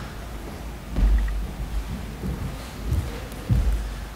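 Footsteps on a hollow wooden platform, picked up through the lectern microphones as several irregular low thuds, the heaviest about a second in.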